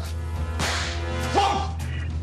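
A comedic whoosh sound effect: a swish about half a second in, then a short rising tone, over background music.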